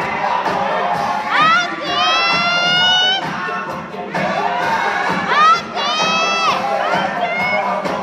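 Audience cheering and shouting, with two long high-pitched screams that rise in pitch and then hold, the first about a second in and the second around five seconds in.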